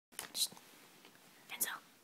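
A child whispering close to the microphone: two short breathy bursts, one about half a second in and one near the end.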